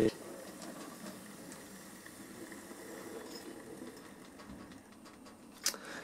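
Hornby OO gauge Princess Coronation model locomotive running along the track: a faint, steady motor whirr and wheel rumble. A brief sharp sound comes near the end.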